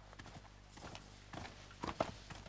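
Footsteps on a hard floor: a handful of irregular steps about half a second apart, growing louder near the end as the walker comes closer.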